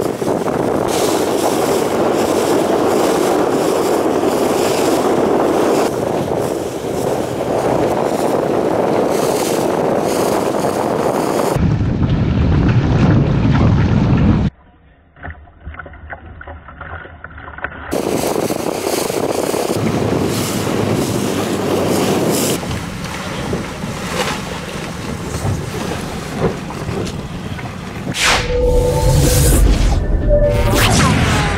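Wind buffeting the microphone and water rushing and splashing past racing sailing catamarans, changing abruptly at cuts between shots, with a much quieter stretch about halfway through. Near the end a whoosh with short tones sets in.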